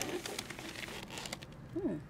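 Brown paper takeout bag rustling and crinkling as hands dig through plastic food containers inside it. A short hum is voiced near the end.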